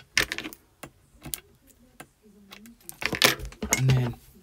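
Light clicks and taps of thin acetate strips lined with red liner tape being handled and pressed down onto a craft cutting mat, with a louder cluster of clicks and rubbing about three seconds in.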